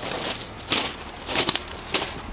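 Footsteps on loose pebble gravel, about one step every two-thirds of a second.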